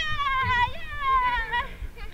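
A young child's high-pitched, drawn-out squealing voice: two long held cries, each sliding slowly down in pitch, while she is swung up in the air.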